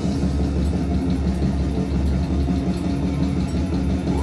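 Metal band playing live: heavily distorted guitars and bass holding a low, droning riff over drums and cymbals, with no vocals.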